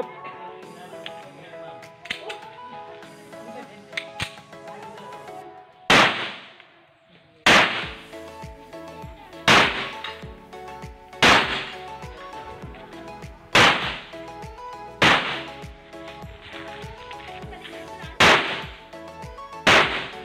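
Semi-automatic pistol fired at a steady pace: about eight single shots spaced one and a half to three seconds apart, the first about six seconds in, over background music.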